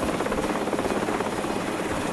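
Helicopter rotor running steadily, with a rapid, even beat of the blades.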